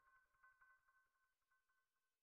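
Near silence, with only a faint ringing tail of the music's notes dying away.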